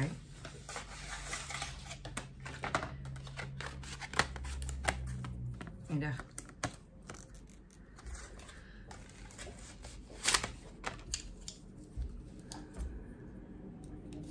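A packet of paintbrushes being handled and opened, a run of small irregular clicks and rustles from the card-and-plastic packaging as the brushes are pulled out.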